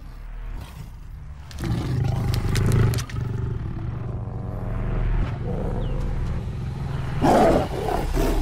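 A lion growling: a deep, drawn-out growl begins about a second and a half in, with a louder snarling burst near the end.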